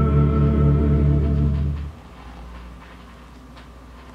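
The closing held chord of a 1940s western vocal-group record, played from a vinyl LP, ending just under two seconds in. After it comes the quiet hiss of the record's surface, with a few faint crackles.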